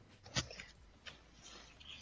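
A few faint clicks and knocks of handling noise, the first about a third of a second in, as gear is moved and readied to play a bass line.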